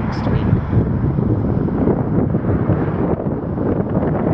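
Strong wind buffeting the microphone: a loud, steady rumble.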